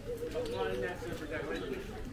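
Indistinct voices of people talking, fainter than a close voice, over a steady outdoor background hum.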